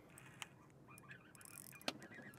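Near quiet with a few faint isolated clicks, the sharpest near the end, from a spinning reel and rod being worked while a hooked bass is played.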